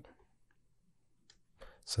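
Near silence: quiet room tone with a couple of faint clicks, between a voice's words; speech resumes near the end.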